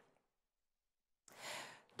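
Near silence, then about a second and a half in a short, soft intake of breath before speaking.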